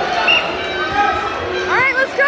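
Spectators' voices chattering in a large gymnasium, with a high-pitched voice starting to shout near the end.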